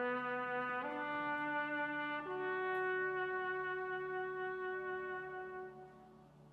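Trumpet playing slow, sustained notes: two shorter notes, then a long held note from about two seconds in that fades out near the end. A low steady hum sits underneath.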